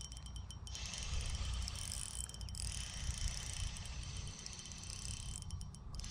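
Shimano Stradic 2500 spinning reel being cranked steadily to retrieve a lure, a faint mechanical whirring and ticking from its gears, over a low steady rumble.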